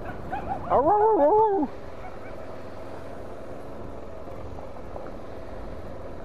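A dog barking and yelping a few times in the first two seconds, the longest call the loudest. Under it and after it, the motorcycle's single-cylinder engine runs steadily at low speed.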